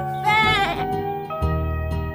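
A cartoon lamb's bleat, one short wavering call about a quarter-second in, over background music with steady held notes and a bass beat about once a second.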